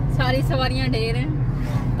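Steady low drone of a car's engine and road noise heard from inside the cabin while driving, with a voice talking over it for about the first second.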